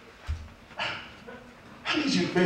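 A low thump, then a short vocal exclamation about a second in, with voiced speech starting again near the end.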